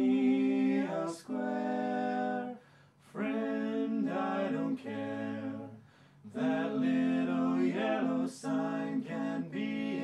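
Three male voices singing a cappella in close barbershop harmony, in sung phrases broken by short gaps about a second in, near three seconds and near six seconds.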